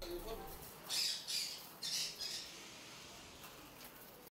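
A bird calling: four short squawks, the first about a second in and the last near the middle.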